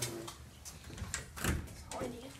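Glazed wooden door being handled: a few light knocks and clicks, the loudest about a second and a half in.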